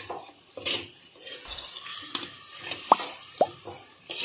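Steel spoon stirring masala-coated chicken pieces in a clay pot: soft wet squelches and scrapes, with two short, sharp scrapes of the spoon against the pot about three seconds in.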